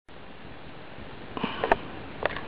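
Steady hiss, then about a second and a half in a short sniff close to the microphone, ending in a sharp click.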